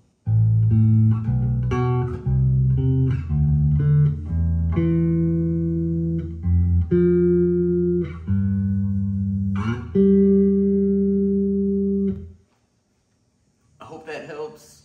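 Electric bass guitar played as a run of single plucked notes in A minor pentatonic octave shapes, the later notes held longer, stopping about twelve seconds in.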